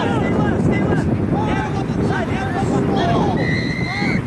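Distant players shouting across a rugby pitch over wind rumbling on the microphone; near the end a referee's whistle sounds one long steady blast.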